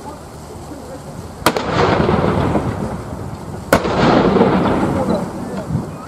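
Field gun firing blank rounds: two sharp, loud bangs a little over two seconds apart, each trailing off in a rumble that lasts more than a second.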